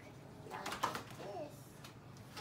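A young child's short, soft wordless coo, a single pitch that rises and falls about a second in.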